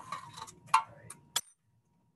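Lab equipment being handled and set down: a brief rustling hiss, then one sharp clink about three-quarters of a second in and two lighter ticks after it, after which the sound cuts out to silence.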